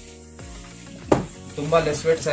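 A saree being unfurled and spread over others on a table: the fabric rustles, with one sharp flap of the cloth about a second in.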